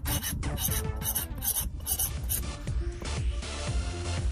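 A coarse 140-grit stone on a KME-style guided-rod sharpener rasping along the steel edge of a cleaver blade, about six quick strokes in the first two and a half seconds, then stopping. This is the coarse stage that forms the apex of the edge.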